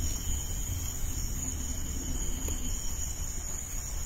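Crickets chirping in a steady, high continuous trill, over a low background rumble.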